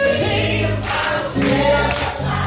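Gospel choir singing loudly, many voices together over a steady low accompaniment.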